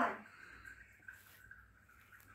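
The tail of a spoken word, then a quiet room with a few faint, soft taps.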